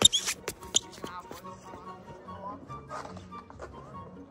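Sharp handling knocks and a brief rustle as a handheld camera is set down and fixed in place. Soft music with a low sustained note continues underneath.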